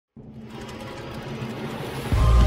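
Intro-animation sound effect: a dense, rattling swell of noise that starts abruptly and grows steadily louder.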